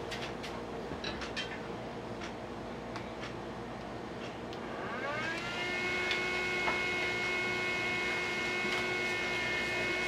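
Small electric fan inside a homemade foam-cooler incubator spinning up at power-on: about five seconds in, a whine rises in pitch over about a second, then holds steady as the fan reaches speed. A few faint clicks come before it.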